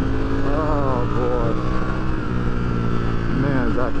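Ducati Streetfighter V4S's 1103 cc V4 engine running at a steady cruise on the moving bike. The rider's voice comes over it twice, about half a second in and near the end.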